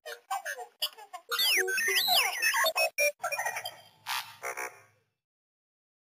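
Channel intro sting of R2-D2-style droid beeps, chirps and swooping whistles over music, lasting about five seconds and stopping abruptly.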